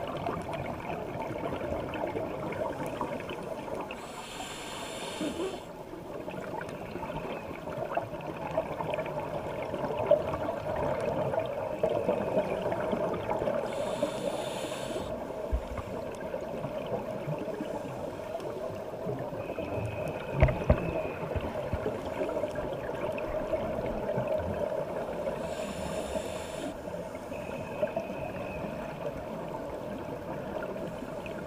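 Scuba diver breathing through a regulator, heard underwater: three bursts of exhaled bubbles about ten to eleven seconds apart over a steady underwater hum, with a double knock about twenty seconds in.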